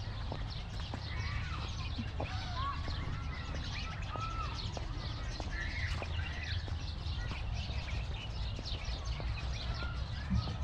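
Many small birds chirping and calling all at once, a dense chorus of short, quick notes over a low steady rumble.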